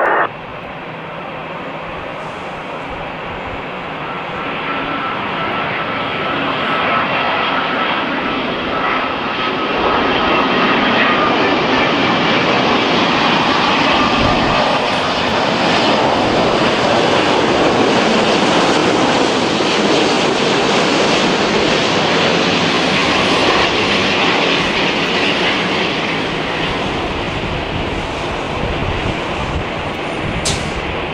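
Airbus A350's Rolls-Royce Trent XWB jet engines on final approach, a steady jet rumble that grows louder as the airliner passes close by. A faint high whine, falling slightly in pitch, shows in the first half, and the rumble eases a little near the end.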